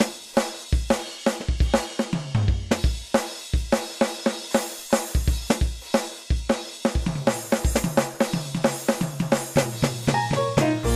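Drum kit solo in a lounge-band recording: kick drum, snare and cymbals played in a busy pattern of several strikes a second.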